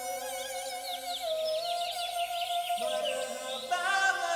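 Budgerigars twittering, a dense run of quick high chirps, over music with long held notes. The chirping stops shortly before the end.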